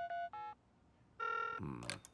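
Phone keypad beeps as a number is dialed on a smartphone: two short tones at the start, then after a short pause a single ringing tone a little past halfway. A brief voice sound follows near the end.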